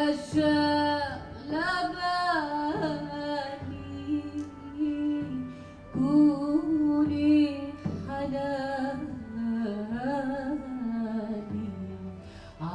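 A woman singing a slow, unaccompanied-sounding melody in long, ornamented phrases, with held notes that glide up and down and brief pauses for breath between lines.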